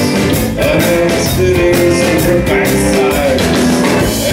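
Live rock band playing: electric guitar carrying a melodic line of held notes over bass guitar and a drum kit keeping a steady beat.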